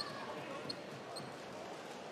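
A basketball dribbled on a hardwood court over a faint background of arena voices, with a few short, high squeaks.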